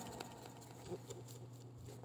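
Faint handling of a cardboard parcel box: a few light scattered taps and rustles over a low steady hum.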